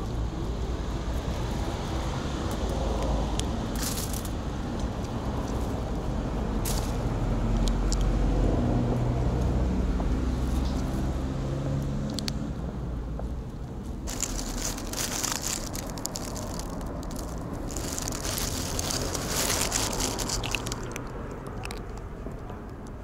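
Road traffic: a vehicle's engine hum swells and passes, loudest about eight seconds in, over a steady low rumble. In the second half there is a stretch of crackling, crunching noise.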